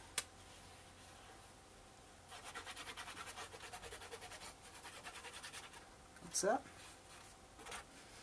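Glue bottle nozzle rubbing across heavy paper as glue is spread: a faint, quick, even scratching of about six or seven strokes a second, from about two seconds in until near the end.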